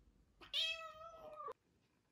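A British shorthair cat meowing once, a single call about a second long that bends down in pitch and cuts off sharply.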